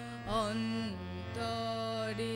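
A woman singing a Bengali song, with a wavering ornament about half a second in and then a long held note, over a steady low drone.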